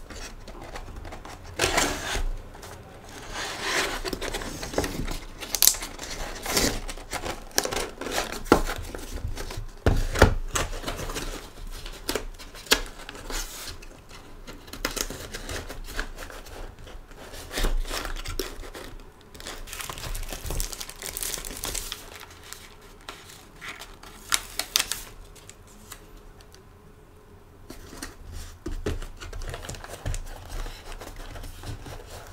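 Cardboard mailer boxes being folded shut and handled on a desk, with paper rustling and light irregular knocks and taps.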